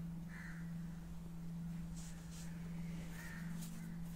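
Faint bird calls, two short calls about three seconds apart, over a steady low hum.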